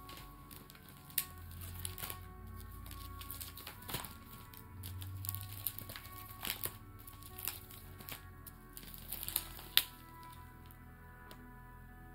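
Plastic sleeve pages of a card binder being flipped one after another, giving irregular crinkles and sharp snapping clicks, the loudest near the end. Soft background music plays underneath.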